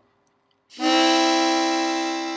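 Diatonic C harmonica blown on holes 1, 2 and 3 together, sounding one steady held C-major chord. It starts about three-quarters of a second in, after a short silence, and is the blow-out half of the draw-then-blow "train whistle" chord rhythm.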